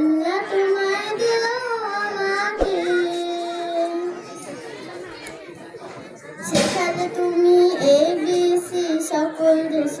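A child singing a Bengali Islamic gojol, a slow melodic line with long held, wavering notes. The voice drops quieter about four seconds in and comes back strongly a couple of seconds later.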